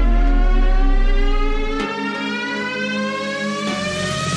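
Electronic synth riser: a tone that climbs slowly and steadily in pitch, building toward a drop. It sits over a deep bass drone that cuts out about two seconds in.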